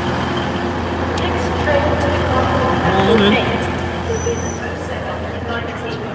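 TransPennine Express Class 185 diesel multiple unit idling at the platform, a steady low drone that fades near the end, with voices around it and a brief high beep about four seconds in.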